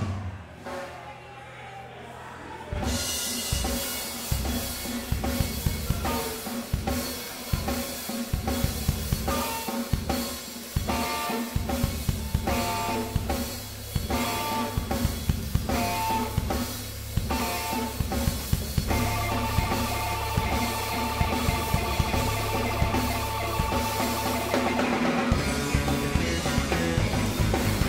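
Rock band playing live. After a quiet opening, the full band comes in about three seconds in, with a steady drum-kit beat, bass guitar and guitar.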